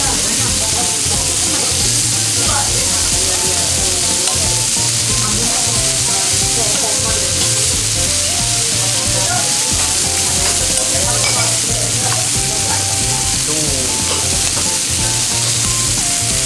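Sauce-glazed offal sizzling steadily on a hot cast-iron griddle plate, the pieces turned with tongs.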